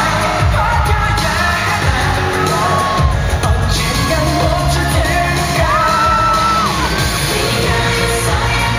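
Loud pop dance track with singing over a heavy bass beat, played through stage loudspeakers in a large hall.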